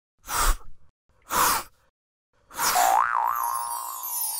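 Cartoon sound effects for an animated logo intro: two short whooshes, then a springy boing-like tone that wobbles in pitch over a falling sparkly shimmer.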